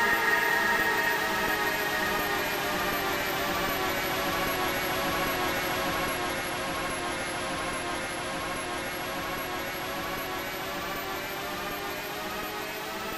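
Sustained electronic synthesizer drone: many held tones over a hissing noise layer, with a slowly wavering texture, gradually fading.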